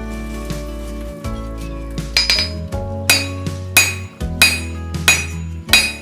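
A hammer striking hot steel on an anvil, six ringing blows about two-thirds of a second apart starting about two seconds in, over background music.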